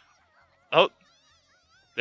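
A man's short exclaimed "oh" about two-thirds of a second in, over faint, wavering high-pitched sound from the anime's soundtrack.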